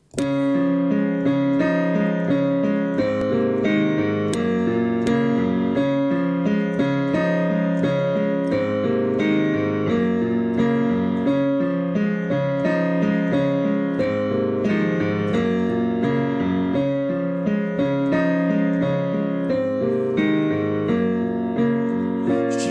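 Keyboard playing the slow instrumental intro of a pop ballad: sustained chords struck at a steady, regular pace, starting abruptly at the beginning.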